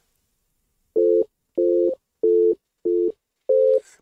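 Dull software-synth tone from REAPER playing back a recorded MIDI track: five short, evenly spaced notes at about the same mid pitch. Each note holds steady and stops abruptly, with no piano-like decay.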